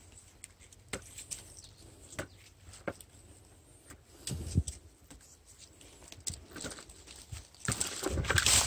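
Scattered snaps and rustles of dry twigs and leaf litter as young winged spindle leaves are picked by hand, with a denser, louder rustle about four and a half seconds in.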